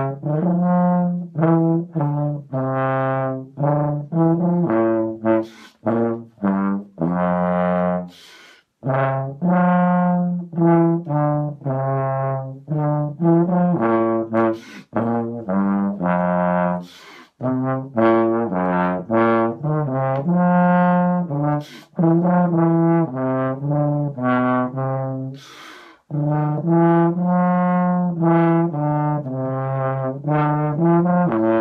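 BBb/F contrabass trombone played through a Denis Wick 3 tuba mouthpiece: a melodic phrase of short, separate low notes, with brief pauses for breath between groups of notes.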